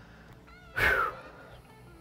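A short vocal cry falling in pitch, just under a second in, over faint, steady background music.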